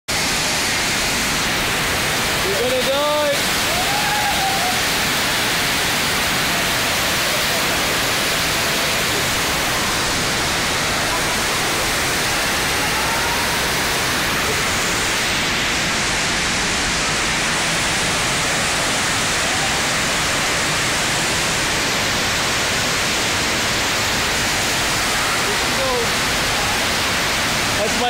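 Steady loud rush of water from a FlowRider surf simulator, its pumped sheet of water flowing up the wave ramp. Voices cut through it, with a short rising shout about three seconds in.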